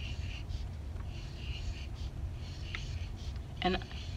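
Felt-tip marker rubbing across paper as small loops are drawn, in soft repeated strokes.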